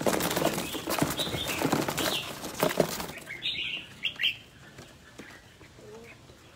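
Birds' wings flapping in a rapid, dense flurry for about three seconds, then a few short high chirps.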